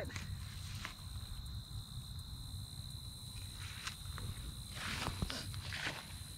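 Footsteps and rustling through dry grass and loose garden soil, with a few light knocks and louder rustling near the end. A thin, steady high-pitched tone runs underneath.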